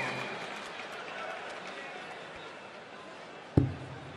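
Low background noise dies away, then a single sharp thud near the end: a steel-tip dart striking a bristle dartboard.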